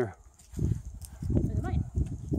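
Uneven low rumble and soft thumps on a handheld camera's microphone while the person filming walks, starting about half a second in.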